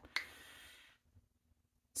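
A short mouth click as the lips part, then a soft breath in that fades out within about a second.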